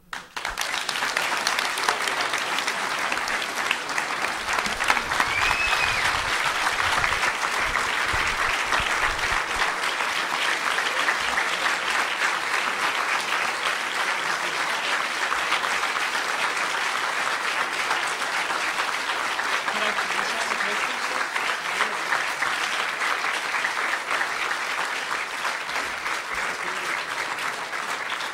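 A large audience applauding in a hall, a dense, steady clapping that starts right after the speaker's last words and keeps going, with a short whistle from the crowd about five seconds in.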